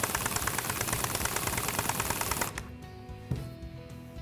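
Impact wrench hammering rapidly as it drives the spindle of a spring compressor, compressing a car's coil spring. It stops about two and a half seconds in, leaving quiet background music.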